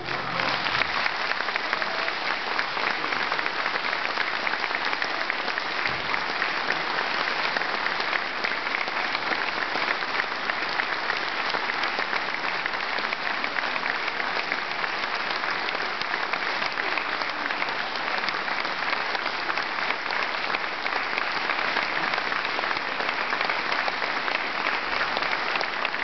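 Audience applauding: dense, steady clapping that starts as the sung duet ends and holds at an even level throughout.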